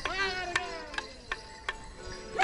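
Border morris dance: a high, wavering yell that rises and then falls over the first second, over the dance band's music. Wooden morris sticks clack sharply about four times.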